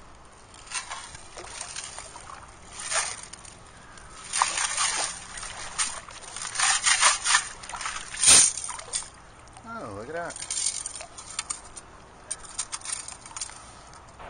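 Long-handled metal sand scoop worked into the bay bottom and lifted out, water sloshing and draining through its mesh, with a sharp knock about eight seconds in. Near the end, light clicking of shells and gravel shifting in the scoop.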